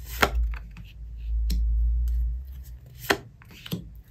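Tarot cards being laid down one by one on a tabletop: about four sharp taps as cards are set down and pressed flat, with a low rumble from the hands handling the cards in the first half.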